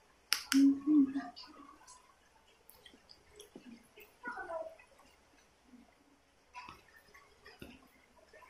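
A baby's short voiced gurgling sounds near the start, then a brief falling vocal sound about four seconds in, with faint mouth and handling clicks between.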